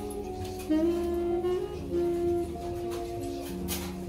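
Jazz saxophone playing a slow melody of long held notes over a soft low backing.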